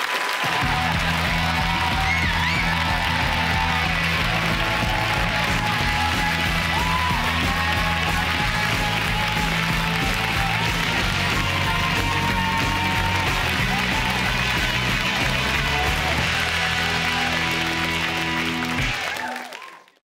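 TV panel show's closing theme music, a band track with a steady, pulsing bass line, playing over studio audience applause. It fades out near the end.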